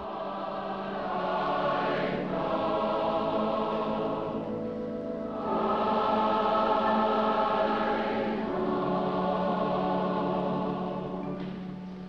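Large choir singing a slow hymn in long, held chords, phrase by phrase, with a new, louder phrase beginning about five and a half seconds in.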